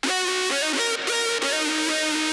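Distorted saw-wave lead synth playing a melody wet with reverb, its notes stepping and briefly sliding from one to the next. Playback starts abruptly at the beginning.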